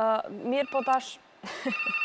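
A desk telephone starts ringing about one and a half seconds in, a steady trilling ring that carries on, after a woman's few words.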